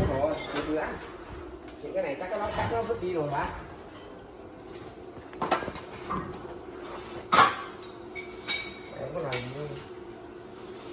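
Several sharp metallic clanks and clinks as scrap sheets and a steel bar are handled and set down on a pile. Some clanks ring briefly. They come from about five seconds in, with the loudest about two seconds later.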